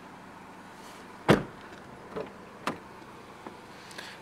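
A car door of a 2009 Nissan Qashqai shut with one heavy thump about a second in, followed by a couple of lighter knocks and clicks over a low steady hum.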